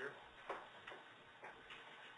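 A quiet room with about three faint, irregularly spaced clicks, the clearest about half a second in.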